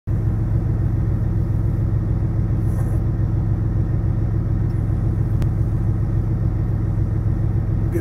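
Peterbilt 579 truck's diesel engine idling, heard inside the cab as a steady low drone. A single faint click comes about five and a half seconds in.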